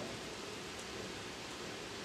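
Room tone: a steady, even background hiss with no distinct events.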